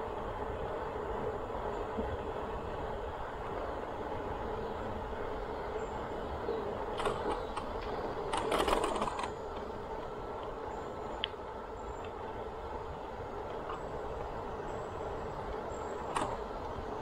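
Bicycle rolling along a paved trail: steady tyre and wind rumble, with a brief cluster of clicks and a louder rattle about seven to nine seconds in.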